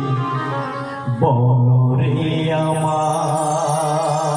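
A man singing a jharni, a Bengali Muharram folk song, into a microphone, holding long notes with a wavering pitch. A little after a second in the line breaks off briefly and a new phrase starts on a rising note.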